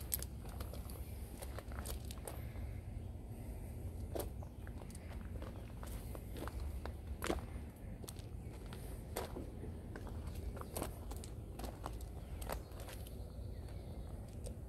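Footsteps on gravel: scattered, irregular soft crunches over a low, steady rumble.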